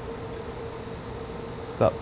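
A steady low hum with an even hiss behind it, from the powered-up TIG welder setup.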